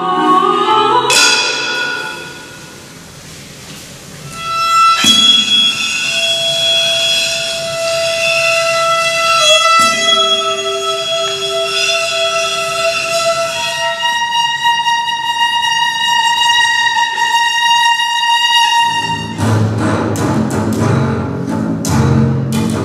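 Contemporary chamber music played by a small ensemble: long, steady held high notes from violin and other instruments. They start after a struck attack about five seconds in and shift to new pitches about nine seconds later. Near the end comes a denser, lower passage with quick percussive strikes.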